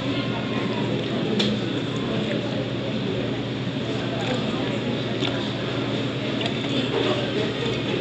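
Restaurant dining-room background: a steady murmur of other diners' voices over a constant low hum, with a few faint clicks.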